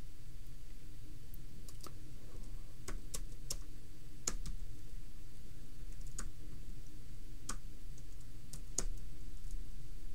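Computer keyboard being typed on: about a dozen sharp key clicks at an uneven pace, spread over several seconds, over a low steady background hum.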